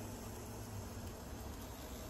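Chicken apple sausages sizzling inside a closed electric contact grill: a faint, steady hiss over a low hum.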